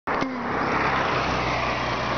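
A car passing at road speed: a steady rush of tyre and engine noise with a low engine hum, and a single click near the start.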